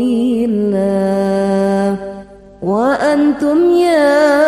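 A voice singing an Arabic sholawat line in a chanted, melismatic style: it holds a long steady note, breaks off briefly about two seconds in, then glides up into the next phrase.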